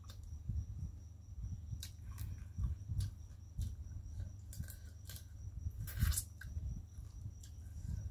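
Close-miked chewing and mouth sounds of a person eating papaya salad, with repeated soft thumps and scattered sharp crunching clicks, the loudest about six seconds in.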